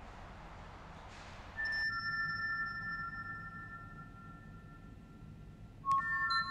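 Soundtrack music of synthesized chime-like tones. A hissing ambience swells briefly and cuts off under one and a half to two seconds in, as two clear high tones ring out a moment apart. They hold and slowly fade, and a new chime strikes at the very end.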